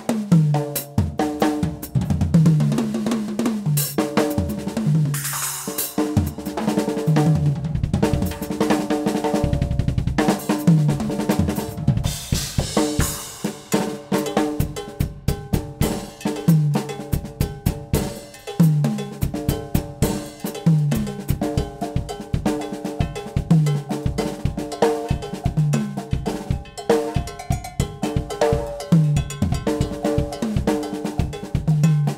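Yamaha acoustic drum kit played in a fast, dense solo: snare, bass drum and pitched tom fills, with cymbal crashes about five and twelve seconds in.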